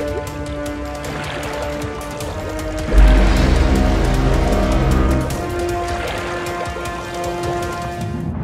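Dramatic cartoon soundtrack music with held notes. About three seconds in, a deep low rumble swells in under the music as the loudest sound, then drops away about two seconds later.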